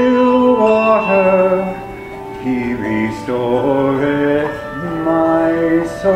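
Handbell choir ringing sustained chords, the chord changing roughly every second.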